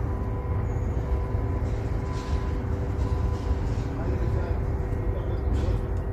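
Steady outdoor background noise: a low rumble with a constant mechanical hum of a few steady tones, and no clear event standing out.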